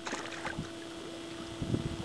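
Faint splashing and a few soft knocks as a hand reaches into the water at the side of a boat to grab a hooked largemouth bass, over a steady low hum.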